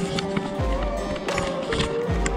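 Background music: sustained tones over a deep bass note that slides down and repeats about every second and a half.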